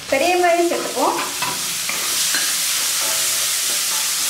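Chopped onions frying in hot oil and ginger-garlic paste in an iron kadai, with a steady sizzle that swells about two seconds in as they are stirred with a wooden spatula.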